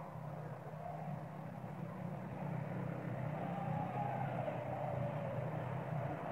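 Steady low rumble like a distant engine, getting a little louder about two seconds in.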